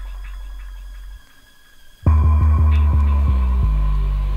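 Drum and bass music from a DJ mix. A deep sub-bass note fades and drops out to a brief near-silent gap about a second in. The music comes back in loud about two seconds in with a run of short deep bass notes.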